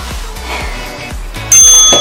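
Background music with a steady beat; about a second and a half in, an interval timer's loud ringing chime sounds, marking the end of the work interval.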